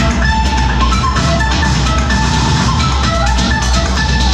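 Loud dance music from a live DJ mix, with a steady driving beat and a bright, bell-like melodic line over it.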